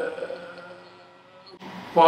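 A man's voice trailing off at the end of a phrase, then faint room tone with a low hum, changing abruptly near the end.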